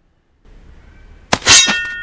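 Loud metallic clang of a knife blade about one and a half seconds in, with a ringing tail that fades over about half a second.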